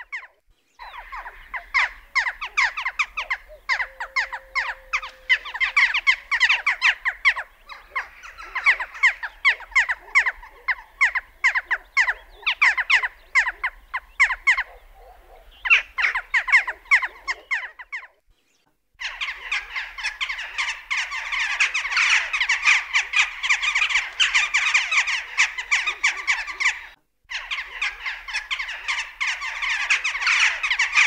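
Western jackdaws calling: long runs of short, high, nasal calls given in quick, jerky succession, in several takes separated by brief silent breaks about a second in, about 18 s in and about 27 s in. From about 19 s in the calls grow denser and overlap, a noisy chatter of several birds.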